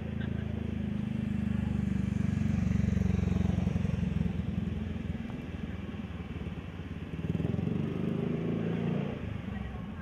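Drag-racing motorcycle engine running in the pits, its note rising and falling: it swells about two to three seconds in, settles, then rises again near the end.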